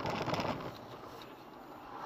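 Road noise inside a moving car on a snowy, slushy highway: tyre and cabin hiss with faint ticks at first, easing off after about half a second.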